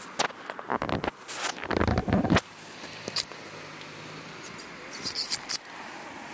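Handling noise from fingers rubbing and knocking on the phone's microphone: a burst of scrapes and knocks in the first two and a half seconds and a few more clicks near the end, over a steady faint outdoor hiss.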